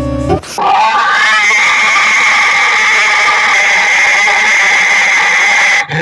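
Heavily distorted, pitch-shifted effect audio: a short pitched tone that cuts off about half a second in, then a loud, harsh sustained noise with a steady high tone running through it, holding for about five seconds and stopping abruptly just before the end.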